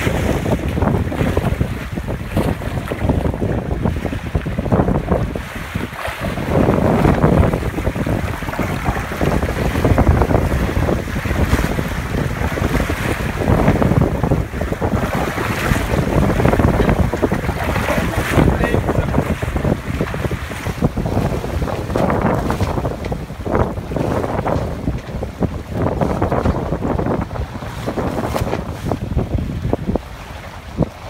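Wind buffeting the microphone over the rush of water along the hulls of a trimaran sailing at about 6 knots. The level surges and eases every second or two.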